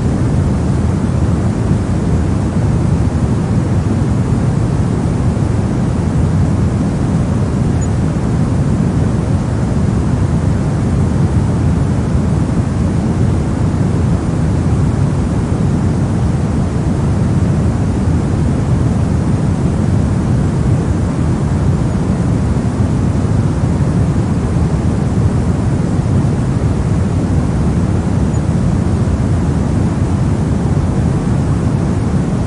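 Steady pink noise for sleep: an even, unchanging hiss weighted toward the low end, with no breaks or changes.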